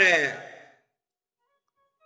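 A man's voice draws out the end of a word and trails off with a falling pitch within the first second, then there is dead silence.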